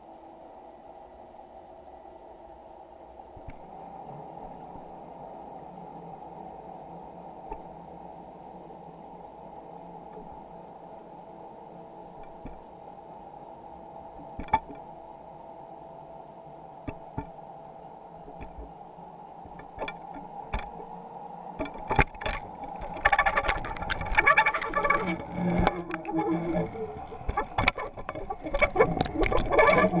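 Underwater sound heard through a GoPro's sealed waterproof housing: a steady, muffled hum. A few sharp knocks come from about halfway through, and in the last eight seconds they turn into dense, louder knocking and rattling as the camera rig on the fishing line is jolted.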